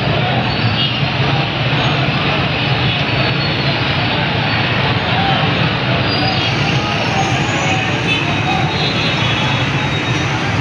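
Crowd of marchers on a road: many voices mixed together with no clear words, over a steady noise of vehicles.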